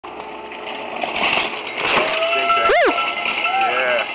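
Downhill mountain bike clattering over the rough trail as it passes, followed by spectators' long shouts and whoops.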